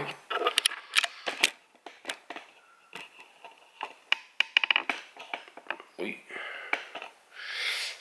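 Small sharp clicks and metallic ticks of bonsai wire being handled and bent around the branches of a potted trident maple bonsai, a quick irregular run of them that stops about five seconds in.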